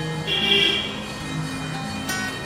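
Background music with held notes that change every half second or so.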